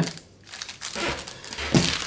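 Clear plastic bag crinkling in the hands, in soft irregular rustles, as a small part is slipped back inside it.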